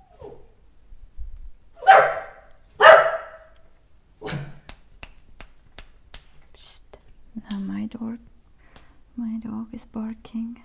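A dog barks twice, loudly, about a second apart, then gives a shorter, quieter third bark.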